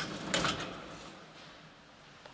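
Collapsible steel lattice gate of an old elevator being slid: two sharp metal clicks about a third of a second apart, then the sound fades away over the next second.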